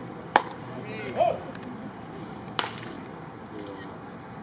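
A pitched baseball hitting the catcher's leather mitt with a sharp pop just after release, followed a second later by a short shout. Another sharp pop comes a little past halfway through.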